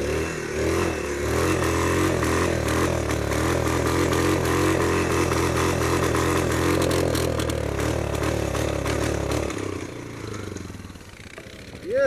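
Quad bike engine revved hard and held at high revs for about nine seconds as the stuck ATV tries to pull out of deep snow, then dropping back toward idle near the end.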